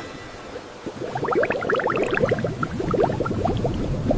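Cartoon bubbling sound effect: a dense run of small rising bloops, sparse at first and thickening about a second in.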